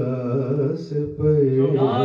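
A man's voice chanting a melodic devotional recitation into a microphone, holding long drawn-out notes with a short break a little after a second in.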